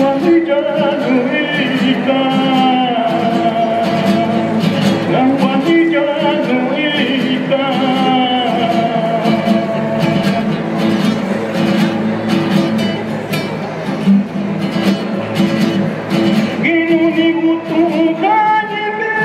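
Two acoustic guitars strumming a steady accompaniment while a man sings into a microphone; the sung phrases come in the first half and return near the end, with guitar alone in between.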